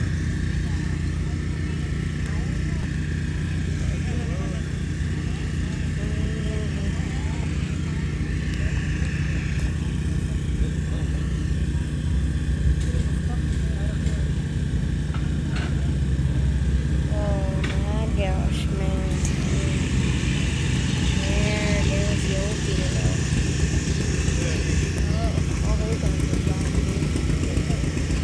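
An engine running steadily at a low, even speed, with no revving, and people's voices over it.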